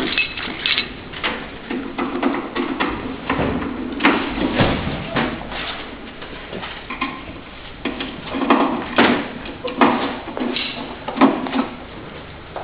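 Irregular knocks, taps and clatter from handling the heating table's metal frame and parts, a few sharper knocks standing out among softer handling noise.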